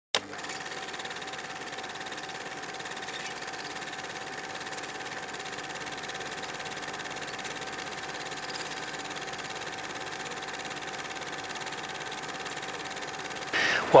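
A steady hum with a few thin, steady tones running through it, even in level throughout, after a brief click at the very start. A man's voice begins just before the end.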